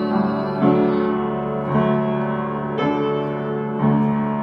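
Hymn accompaniment on piano or electric keyboard: sustained chords, a new chord struck about once a second.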